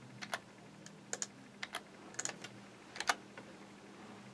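Faint clicks of a computer keyboard and mouse working audio editing software, coming in quick pairs about five times, over a faint steady hum.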